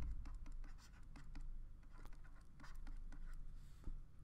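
Faint scratching strokes and light taps of a pen writing a word by hand, over a low steady hum.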